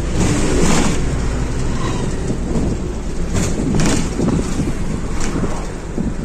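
Steady low rumble of a bus on the move, with a few short knocks or rattles.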